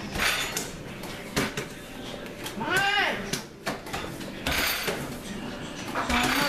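Playing cards being passed, slapped and slid on a wooden table during a fast game of spoons, making a string of short sharp clicks and knocks, with voices and chatter around the table. A single voice rises and falls in a drawn-out exclamation about three seconds in.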